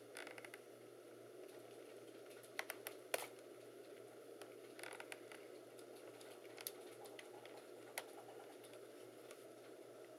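Near silence with a faint steady room hum and a few light clicks and taps from a laptop's plastic case being handled and turned, a small cluster about two and a half seconds in and single clicks later.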